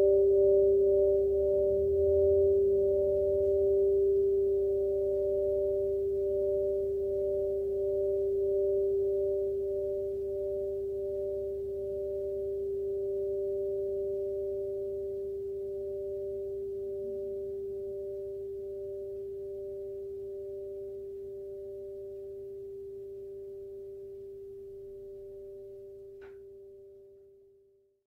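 A Burmese whirling gong (kyeezee) left ringing after a strike, two clear tones sustained and slowly dying away, the higher one pulsing in a slow, even wobble as the gong turns. A faint tick comes near the end, and the ring fades out at the close.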